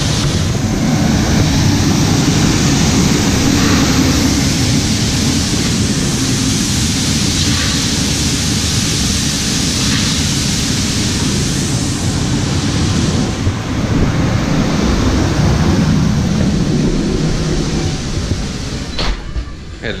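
Steady rush of soybeans pouring from a gravity wagon's unloading chute onto a steel pit grate, mixed with the running of the grain-handling machinery and a tractor. The noise falls away near the end.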